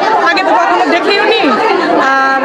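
A woman speaking close to the microphone over the chatter of a crowd of other voices.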